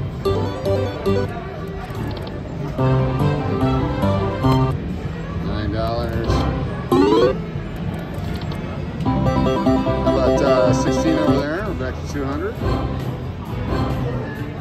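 Four-game Buffalo video slot machine playing its electronic spin music and chimes in short melodic phrases as the reels run, with a quick rising sweep about halfway through, over casino background noise.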